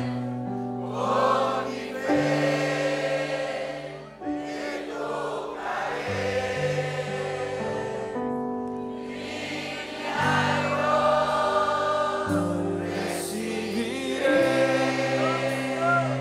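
Live church worship music: electric bass and keyboard playing sustained chords that change every couple of seconds, with voices singing a gospel praise song over them.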